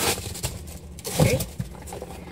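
A cardboard box being handled: a brief sharp knock at the start, then some rustling, with a spoken "okay" about a second in.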